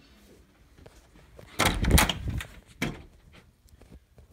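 A wooden interior door with a round knob being opened. A loud cluster of knob, latch and door knocks lasts under a second, starting about one and a half seconds in, and a single sharp knock follows about a second later.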